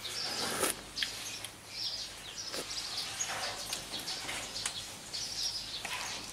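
Birds chirping now and then in the background, short high calls scattered through, with a few faint clicks.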